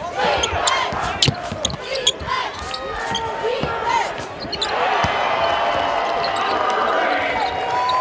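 In-arena sound of a basketball game: the ball bouncing on the hardwood as it is dribbled, with sneakers squeaking, under general crowd noise. About five seconds in, after a shot at the rim, the crowd noise grows louder and fuller.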